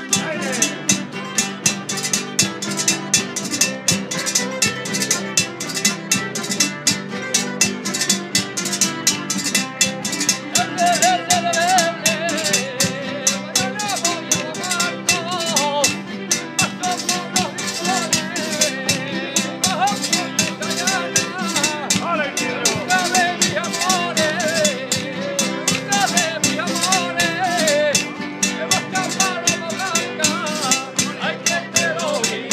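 A Spanish jota in the Vera style played by a street band of strummed guitars and twelve-string bandurria-family lutes, driven by a fast, even beat. Men's voices join in singing about ten seconds in.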